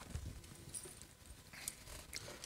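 Faint, irregular light knocks and taps of a book being handled on a lectern.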